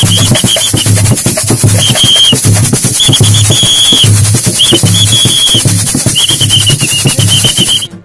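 Brazilian fans' samba street percussion: a bass drum beaten in a steady rhythm under the continuous hiss of a metal tube shaker, with a whistle blown in about five long bursts. It all stops abruptly just before the end.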